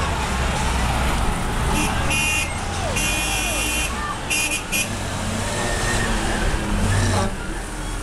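Fire truck engines running with a low rumble, and a series of about five high-pitched horn blasts two to five seconds in, the longest lasting about a second, over voices.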